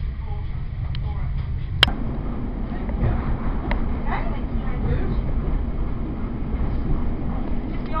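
Train running along the line, heard from inside the carriage: a steady low rumble, with one sharp click about two seconds in.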